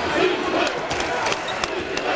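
Basketball arena crowd noise during live play, with a few short sharp knocks and squeaks from the court.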